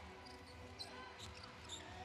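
Faint game sound from a basketball court: a basketball being dribbled on the hardwood floor over a low arena hum, with a few short high squeaks.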